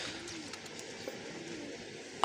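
Domestic pigeons cooing faintly: two low coos, each rising and falling over about half a second, over a steady background hiss.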